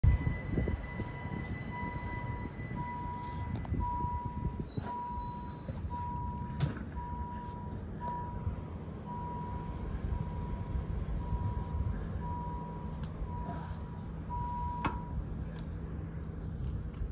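Bernina Railway train running with a steady low rumble, heard from an open window with wind on the microphone. Over it, a high electronic beep repeats about once a second, a dozen or so times, stopping a second before the end, with a couple of short knocks.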